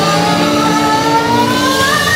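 Live rock band playing, with one long note that slowly rises in pitch over held chords.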